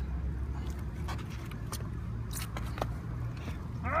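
Low, steady rumble of a small children's bicycle rolling on flat tires over concrete pavement, with a few light clicks and rattles. The rumble eases off near the end.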